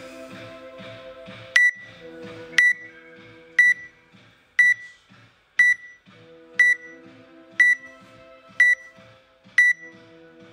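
Workout app countdown timer beeping once a second, nine short high beeps counting down to the start, over background music with a steady beat.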